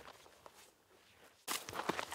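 Footsteps on a stony dirt trail, faint at first. About one and a half seconds in they give way to much louder, closer steps climbing a slope of dry grass and stones.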